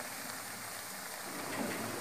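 Soya chunk koftas deep-frying in hot oil in a wok, a steady sizzle of bubbling oil.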